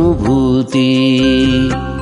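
Devotional song with a voice singing over instrumental accompaniment; a long note is held through the middle.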